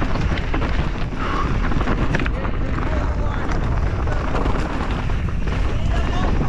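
Mountain bike descending a rough, rocky dirt trail at race speed: a steady rush of wind on the microphone over the rattle of the bike and tyres, with many sharp knocks from rocks and roots.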